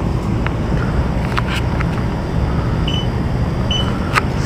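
Steady low rumble with a few light clicks, and two short high electronic beeps close together near the end.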